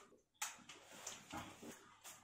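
Near silence, broken by a few faint, brief handling sounds as a half-face respirator mask is pulled off over the head: a sharp tick about half a second in, then softer rustles.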